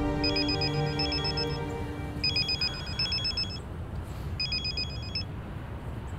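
Mobile phone ringtone for an incoming call: a fast electronic trill repeated in bursts about every two seconds, four times, the last burst cut short about five seconds in. Soft background music underneath fades out about halfway through.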